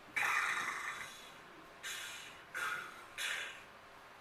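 A person blowing air out sharply through the nose four times, breathy huffs without voice, the first just after the start and the longest.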